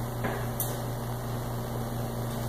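Steady low electrical hum over a background hiss, with a faint click about a quarter second in.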